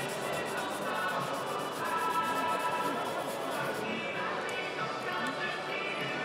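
Background music and chatter in a hall. Under them, the faint quick back-and-forth rasp of a flexible sanding stick wet-sanding a plastic model wing, which stops about four seconds in.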